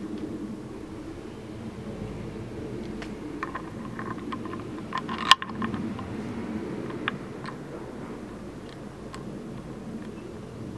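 Small clicks and taps from a RAM mount ball base being handled and fitted onto a motorcycle mirror stem, with one sharp click a little past halfway, over a steady low hum.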